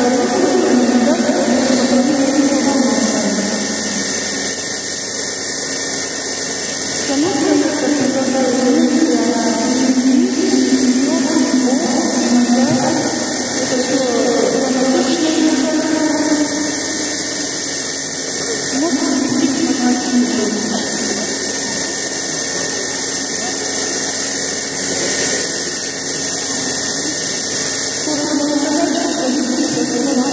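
Machine milking under way: the milking machine gives a steady hiss while its cluster draws milk from a cow's udder. Indistinct voices talk underneath throughout.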